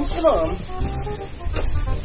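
A long-handled hand tool chopping and scraping weeds from the ground, with two sharp strikes, one at the start and one about one and a half seconds in. A steady high-pitched insect drone runs behind it.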